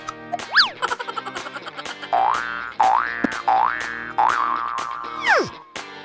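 Comedy background music with a steady beat, overlaid with cartoon sound effects: a quick whistle-like rise and fall about half a second in, three rising sweeps in a row in the middle, and a long falling glide near the end.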